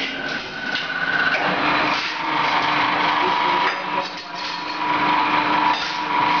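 Roller straightening machine of a sheet-metal cut-to-length line running as a metal strip is drawn through its rollers: a steady whine and hum over a loud mechanical rush, dipping briefly about four seconds in.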